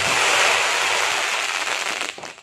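Tusker sky shot firework bursting overhead: a loud, dense, steady crackling hiss from the shower of sparks, easing slightly toward the end.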